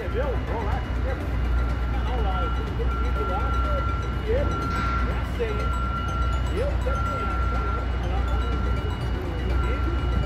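Construction-site ambience: a steady low rumble of machinery with a high electronic beep of one pitch repeating about once a second, the pattern of a machine's warning alarm, and faint voices of workers in the distance.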